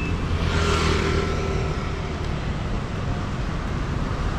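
City street traffic: a steady low rumble, with a vehicle passing close by that swells about half a second in and fades away over the next second or so.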